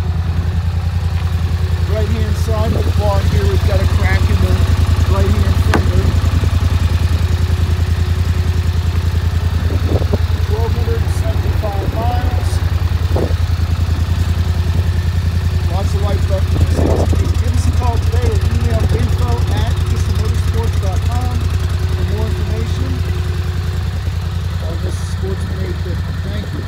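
Polaris Sportsman 850 XP ATV's parallel-twin engine idling steadily.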